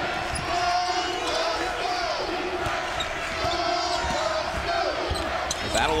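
A basketball being dribbled on a hardwood court during live play, repeated short bounces, with voices in the arena behind.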